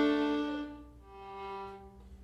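Violin bowing a sustained double-stop chord, A with the open D string, that fades out within the first second, then a softer second double stop begins about a second in.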